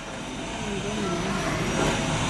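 Shop background noise: a steady rushing sound that grows slowly louder, with faint voices in the background.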